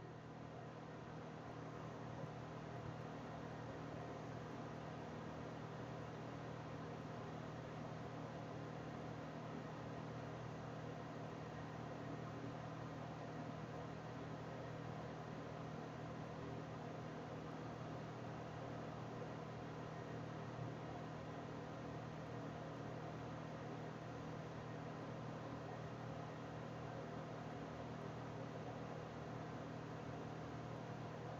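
Faint steady background hiss with a low hum: room tone picked up by the narrator's microphone between comments, unchanging throughout with nothing else happening.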